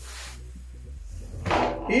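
Hands shifting and pressing on the plastic lid of a portable 12 V compressor cool box, with a brief scrape right at the start. A man's voice comes in near the end.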